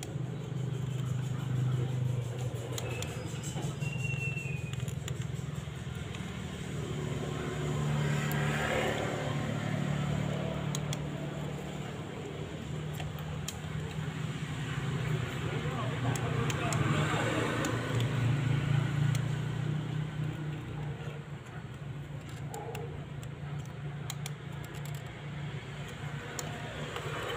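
Transformer-type soldering gun humming at mains frequency as it heats the joints of the IC being desoldered, a steady low hum that swells and eases, with scattered small clicks.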